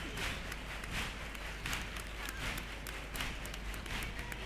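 Theatre audience applauding and cheering at the end of a performance, the clapping swelling in a regular beat about every three-quarters of a second.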